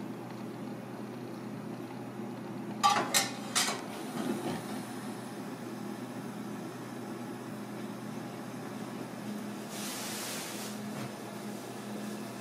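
Gas stove igniter clicking three times in quick succession as the burner under a clay pot is lit, with a soft clatter just after. A steady low hum runs underneath, and there is a short hiss near the end.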